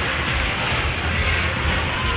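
Steady background din of a busy indoor hall: a constant low rumble with faint music over it.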